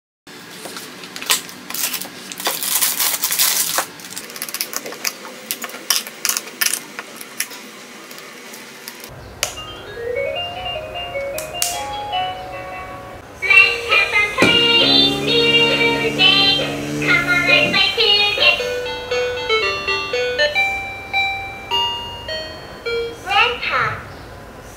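Dinosaur-shaped toy musical phone playing short electronic melodies through its small speaker, one tune after another as its buttons are pressed. For the first several seconds it gives scattered clicks and noisy sound effects instead of tunes.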